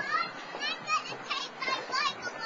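Children's high-pitched voices calling out and chattering, over a steady outdoor background hiss.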